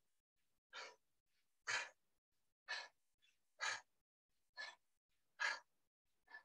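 A person breathing hard from exercise: short, sharp breaths about once a second, with near silence between them.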